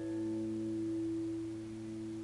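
Shamisen strings ringing on after being plucked: two notes, one low and one higher, slowly fading over a steady low hum.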